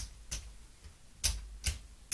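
Dice clicking against each other as they are handled and set by hand on a craps table: three sharp, irregularly spaced clicks.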